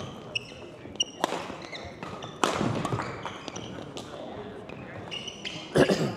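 Badminton rally on a wooden gym floor: sharp cracks of rackets hitting the shuttlecock, the loudest near the end, with many short high squeaks of court shoes on the floor between the hits.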